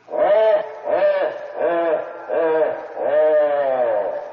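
The giant figure's laugh in a radio drama: five long, drawn-out 'ha's, each rising then falling in pitch, the last held longest.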